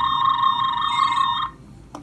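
Tricorder-style scanning sound effect from a Raspberry Pi–built Star Trek tricorder prop: a rapidly warbling electronic tone, steady in pitch, that cuts off about a second and a half in.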